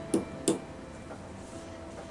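Two quick taps of a small plastic hammer on a plaster excavation block, about a third of a second apart near the start, then only faint room tone.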